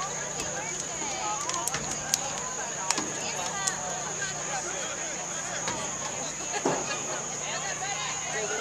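Indistinct chatter of many voices from spectators and sideline players at a football game, with a few sharp clicks or claps in the first half and a steady high-pitched tone underneath.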